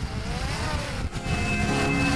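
Quadcopter camera drone hovering close overhead, its propeller buzz rising and falling in pitch, over a low wind rumble. Faint music fades in about halfway through.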